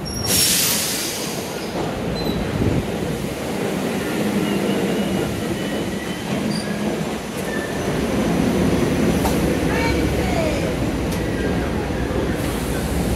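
SEPTA Regional Rail electric commuter train pulling into an underground station platform: a steady rumble of the cars with faint wheel squeals, growing louder about eight seconds in. A short burst of noise right at the start as the glass platform door is pushed open.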